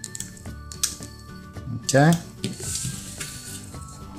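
Soft background music with long held tones, under a few light clicks and faint rustling from rubber bands and a metal hook being worked on a clear plastic loom.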